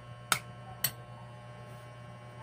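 Metal spoon clinking twice against a ceramic bowl while stirring chopped onion and tomato, over a steady low hum.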